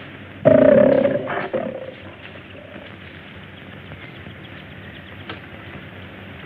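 A big cat's roar, about a second long, just after the start, then only the steady hiss of an old film soundtrack.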